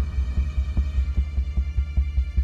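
Background tension music: a low, throbbing bass pulse like a heartbeat.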